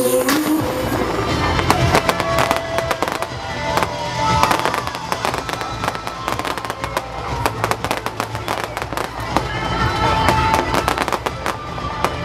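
A fireworks display: many rapid bangs and crackles of shells bursting overhead, packed closely together throughout, with music playing underneath.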